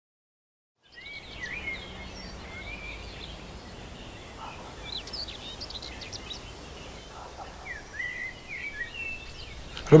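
Songbirds chirping over a faint steady outdoor background. It starts suddenly about a second in, out of silence.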